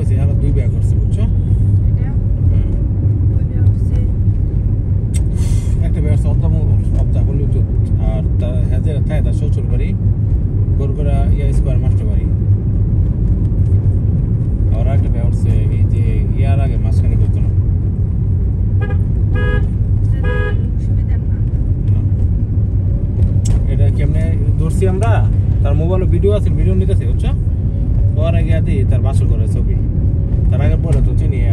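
Steady low rumble of a car driving, heard from inside the cabin, with voices talking on and off. About two thirds of the way through there are two short toots, likely from a horn.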